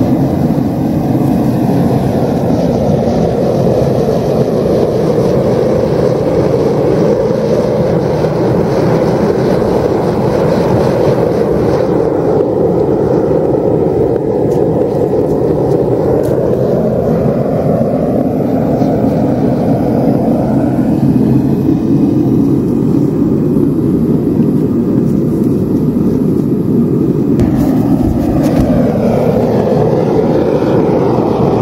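Homemade propane-fired foundry furnace running, its gas burner making a loud steady rushing noise with slow shifts in tone while lead melts in the crucible.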